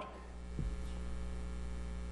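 Steady low electrical mains hum from the sound system. A faint soft knock comes about half a second in.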